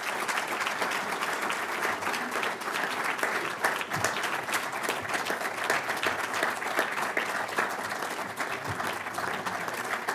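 Audience applauding in a lecture hall: a steady, sustained round of clapping from many hands at the end of a keynote speech.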